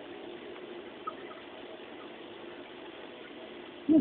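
Steady low hum and hiss of background noise, with one faint click about a second in.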